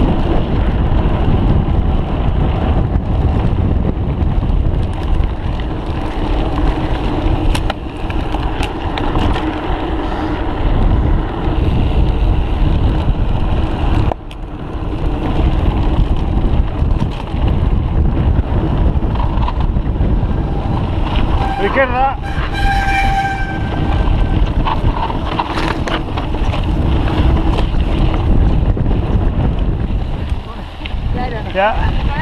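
Wind rushing and buffeting the microphone of a camera carried on a mountain bike descending a trail, with occasional knocks and rattles from the bike over rough ground.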